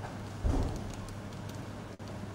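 Room noise with a steady low hum, broken about half a second in by a single low thump that fades within half a second. The sound cuts out briefly near the end.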